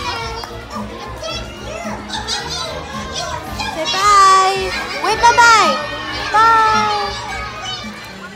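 Children's high voices calling out and squealing over music with a steady beat, loudest in a few drawn-out calls from about four seconds in.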